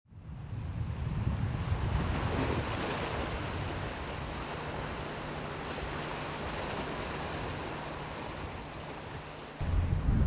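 Sea surf washing, swelling over the first couple of seconds and then slowly ebbing away. Near the end it gives way abruptly to a louder low rumble.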